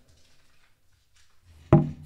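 Faint rustling and small knocks of handling as a man reaches down with a guitar on his lap to pick up a dropped sheet of paper. Near the end a man says "okay".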